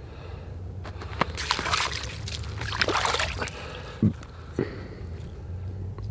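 Fishing line being hauled hand over hand up through an ice-fishing hole, with wet rustling and trickling that swells about a second in and lasts about two seconds. Two short thumps follow near the end.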